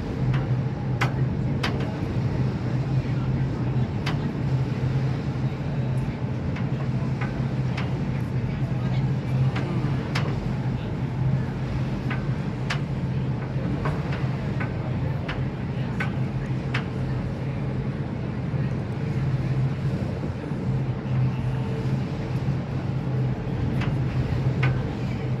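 A boat's engine running with a steady low drone, over water and wind noise, with scattered sharp clicks.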